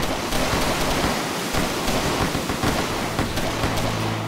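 Dense, continuous crackling and popping of pyrotechnic charges fired from a fleet of boats, merging into one loud, rough roar.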